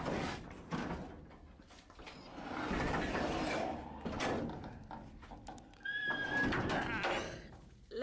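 Manually operated up-and-over garage door being hauled open by hand, rumbling and scraping as it runs up its tracks, with a short squeal about six seconds in.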